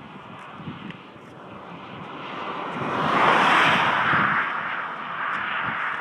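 A vehicle passing on the highway: its tyre and engine noise swells over a couple of seconds, is loudest a little past the middle, then eases off.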